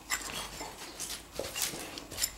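Nine-month-old red-nose pit bull sniffing at an iguana on the ground: about five short, quick sniffs spread over two seconds.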